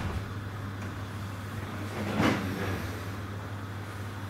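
Steady low hum of room noise, with one brief, louder noise a little over two seconds in.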